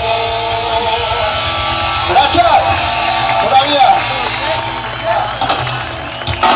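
Live ska-punk band playing through a PA, with amplified guitars and drums, and voices rising and falling over the music.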